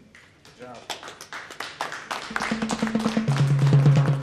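A few people clapping, the claps growing denser, as background music with sustained low notes fades in a little over two seconds in and gets louder.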